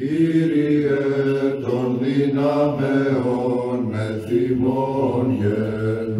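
Slow vocal chant in low voices, long held notes that move in small steps of pitch, steady in loudness throughout.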